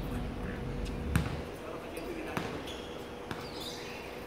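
A basketball bouncing on a hard outdoor court: one loud bounce about a second in, then a few fainter knocks.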